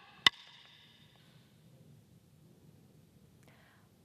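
A single sharp snap about a quarter second in, the students' heels coming together in unison on the wooden gym floor as they come to attention, ringing briefly in the hall. After it, faint room tone.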